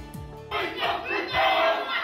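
A group of Māori men chanting and shouting a haka in unison, breaking in abruptly about half a second in.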